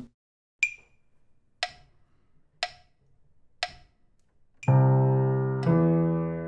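Metronome at 60 beats a minute counting in: four clicks a second apart, the first one higher in pitch than the others. Then a piano comes in on the beat, both hands together, playing the first two notes of a C major arpeggio (C, then E), one note per click.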